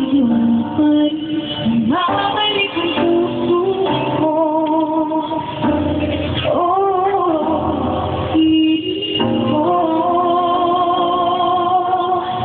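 A female vocalist singing a slow ballad live over backing music, holding long wavering notes with vibrato. The sound is muffled and low in fidelity.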